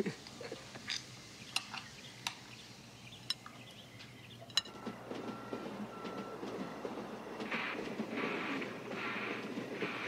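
Cutlery clinking against dinner plates, several separate sharp clinks about a second apart. About halfway through, a steadier background noise sets in and grows louder toward the end.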